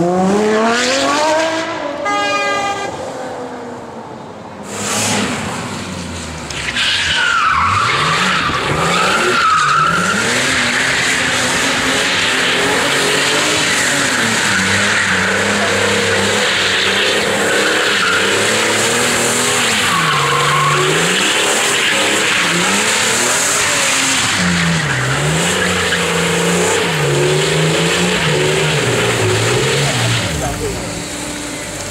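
A car accelerating hard past, its engine note climbing steeply for about two seconds. From about five seconds in, a BMW E46 M3 drift car doing a smoky burnout: the engine is held at high revs, rising and falling, over continuous tyre squeal.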